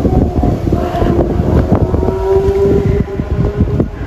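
Wind buffeting a phone microphone outdoors, a loud, gusty low rumble. A steady mid-pitched hum runs underneath and stops near the end.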